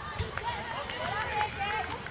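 Several high-pitched voices calling out at once across an open sports field, with no clear words.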